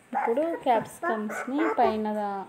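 A voice making speech-like sounds with no clear words. It bends up and down in pitch in short pieces and ends on one held note.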